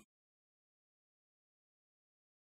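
Near silence: digital silence between narration.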